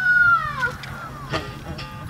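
A high-pitched voice call, rising then falling over about two-thirds of a second, with shorter, fainter calls after it.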